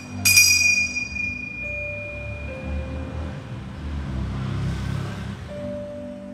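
Altar bell struck once about a quarter second in, ringing out and fading over about two seconds: the consecration bell marking the elevation of the chalice. Under it, soft sustained music notes that change pitch slowly.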